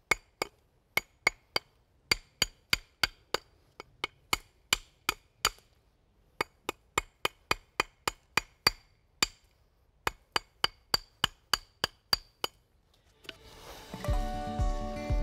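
Hand hammer chipping the edge of a natural stone paver: a rapid run of sharp, ringing strikes, about three a second with two short pauses, stopping near the end. The stone's corner is being knocked off at an angle to undercut it for a tighter fit.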